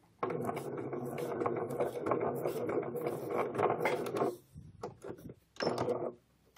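Domestic electric sewing machine stitching at its slowest speed: a steady mechanical run with fast, even ticking from the needle. It stops about four seconds in, and a brief second run follows near the end.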